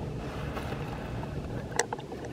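Air-conditioning condensing unit running: a steady low mechanical hum. A short click comes near the end.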